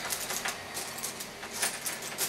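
A few light clicks and taps, spaced irregularly, over a faint steady hiss.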